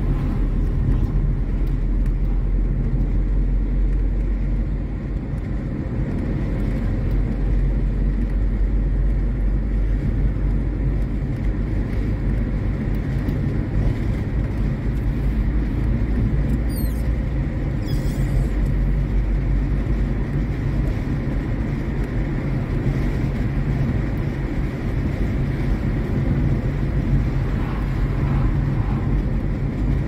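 Steady low rumble of a car being driven, heard from inside the cabin: engine and tyre noise running evenly throughout.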